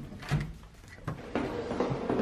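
Soft handling knocks as a hotel-room key card is pulled from its wall power slot. About a second and a half in, background music begins.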